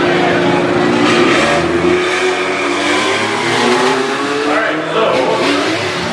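Loud motor-vehicle engines running, one rising slowly in pitch for a few seconds as it gathers speed.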